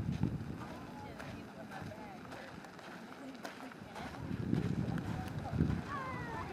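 Indistinct distant voices of people outdoors, with wind buffeting the microphone in gusts near the start and again near the end.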